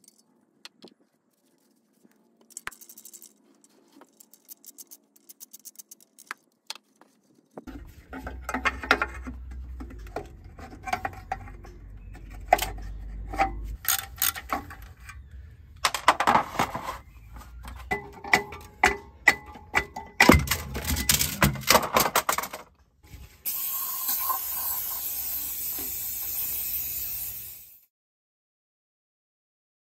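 Socket wrench clicking and metal clinking as the bolts holding the clutch pressure plate to the flywheel are undone. The clinks are sparse at first, then come thick with sharp metallic knocks. A steady hiss runs through the last few seconds.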